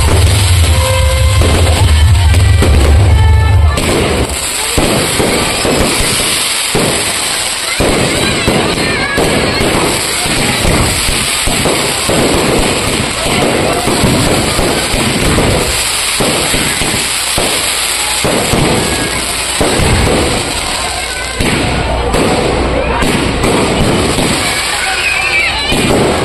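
Loud music with a heavy bass beat plays for the first few seconds and stops about four seconds in. A dense fireworks barrage follows: rockets and aerial shells going off in quick, irregular succession, bang after bang.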